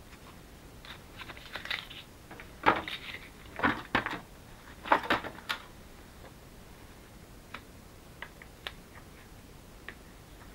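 Die-cut patterned paper pieces being handled: a run of short crackles and rustles of stiff paper over a few seconds, then a few light taps as pieces are set down.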